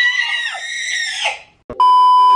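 A young child's high-pitched, playful scream, held for about a second and a half and fading out. Near the end a loud, steady beep cuts in: the test tone of a TV colour-bars glitch transition.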